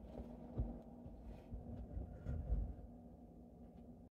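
Close-up sound of silk thread and needle being worked through silk stretched taut on a Japanese embroidery frame: soft low thumps about half a second in and again around two and a half seconds, with faint ticks, over a steady low hum.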